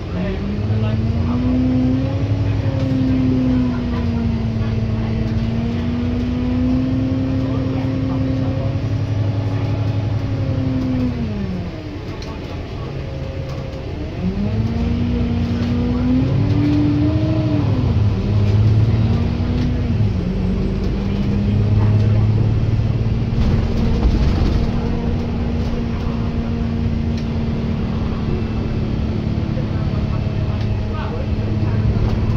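Alexander Dennis Enviro400 MMC double-decker bus engine and drivetrain heard from on board: a steady hum that climbs as the bus pulls away, holds, then falls away as it slows about twelve seconds in. It climbs again a couple of seconds later, with two sudden drops in pitch from gear changes, before settling into a steady cruise.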